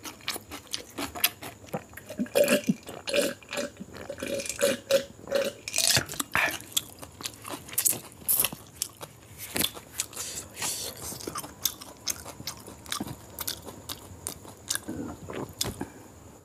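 Close-miked mouth sounds of a man chewing and licking curry gravy off his fingers, with many sharp wet smacks and clicks. A brief pulsing hum comes in a couple of seconds in.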